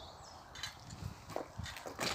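Faint footsteps on paving stones: a few scattered steps at first, then more frequent ones near the end.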